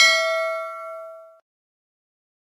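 Notification-bell 'ding' sound effect from an animated subscribe end screen: struck at the start, then ringing with a clear tone that fades and cuts off abruptly about a second and a half in.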